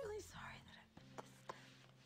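A woman sobbing: a wavering whimper at the start, then shaky breathy gasps and a couple of short sniffs.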